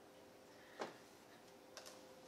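Near silence broken by handling noise: one short click a little under a second in and a couple of fainter ticks near the end, as an electric bass guitar is turned over in the hands.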